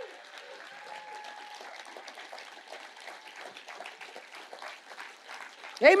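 Church congregation applauding with steady, dense clapping after a climactic line of the sermon.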